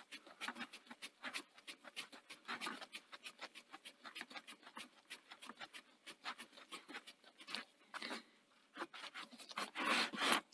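Screwdriver driving a long screw into the sheet-metal case of a Betamax power supply: a run of faint, quick clicks and scrapes, several a second. A few louder knocks near the end as the case is handled.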